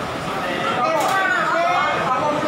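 Men's raised voices in a heated argument, with continuous speech that the recogniser could not transcribe.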